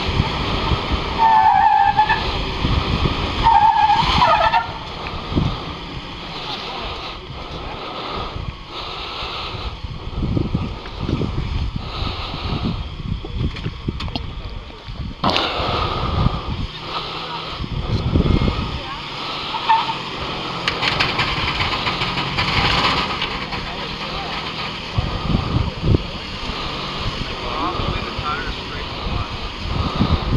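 Off-road Nissan 4x4 engine revving in uneven bursts as it crawls up a steep rock ledge, mixed with wind on the microphone and indistinct shouting from onlookers.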